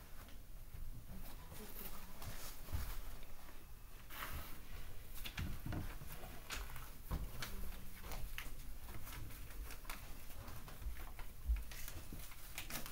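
Faint, scattered rustling and light taps, with a few dull low thumps.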